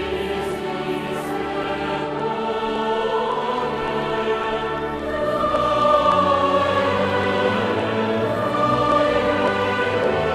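Large mixed choir singing sustained, full chords with instrumental accompaniment in a large church, growing louder about halfway through.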